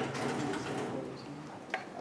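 A soft, low cooing sound, then a single sharp tap of chalk on a blackboard near the end.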